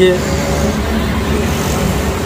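Steady low diesel engine rumble of an Ashok Leyland Dost pickup, heard inside its cab, with the end of a spoken word at the very start.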